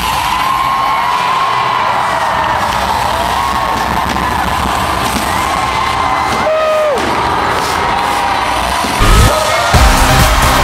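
A large arena concert crowd cheering and screaming, many high voices rising and falling, with the music's beat dropped out. The bass-heavy music comes back in near the end.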